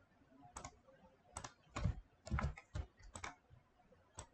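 Computer keyboard keys pressed in an irregular run of about a dozen short clicks, some with a dull thud, as keyboard shortcuts are typed.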